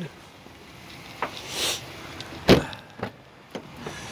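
A car door's single sharp clunk about two and a half seconds in, with faint handling clicks and a soft rustle before it.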